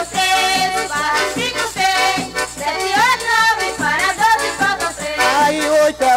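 Pastoril song from a 1978 record: voices singing over the band's accompaniment, without a break.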